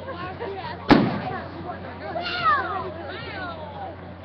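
A firework shell bursting with a single sharp bang about a second in, heard through a phone's microphone. About two seconds in, onlookers' voices call out, falling in pitch.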